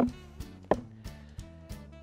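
Background music playing under sharp wooden knocks of juggling cigar boxes clacking together: one right at the start and a louder one under a second in.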